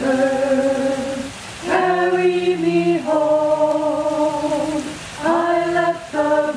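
A small a cappella choir of hospice threshold singers singing a slow, gentle song in long held notes, with two short breaths between phrases.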